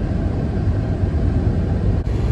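Steady low rumble inside a running car's cabin.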